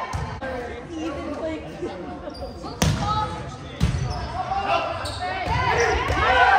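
Two sharp smacks of a volleyball being played, about a second apart, with players' voices calling throughout and growing louder near the end, echoing in a gymnasium.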